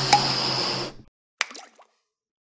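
Logo sound effect: a water-drop plop lands over a steady hiss that stops about a second in. About a second and a half in comes a second short, sharp effect with a brief wavering tail.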